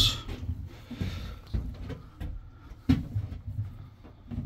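Clicks and knocks of an extension cord's plug being pushed into a flip-covered power inlet and handled, with a sharper knock about three seconds in.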